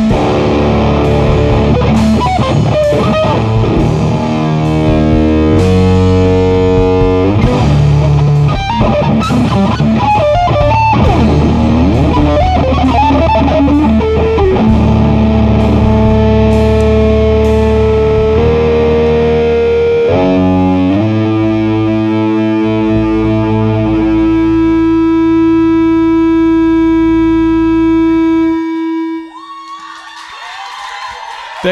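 Live rock band playing: distorted electric guitar, bass guitar and drum kit. About two-thirds of the way in the drumming drops away and long held guitar notes ring out, then the music stops suddenly just before the end.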